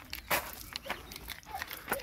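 A few irregular footsteps crunching on gravel, the loudest about a third of a second in.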